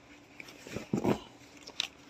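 Wash-and-wear suit fabric being handled, rustling and crinkling in short bursts: a cluster about a second in and one more sharp crackle near the end.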